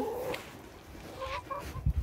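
A domestic hen clucking softly, a few short low notes about a second in, with a low thump near the end.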